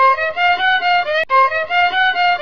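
Violin bowed in a short, lively phrase that repeats about every 1.3 seconds, with a sharp click at the start of each repeat.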